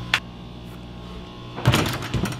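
A basketball strikes the metal rim of a small wall-mounted hoop near the end, a single sharp hit with a short ring, over a steady low hum.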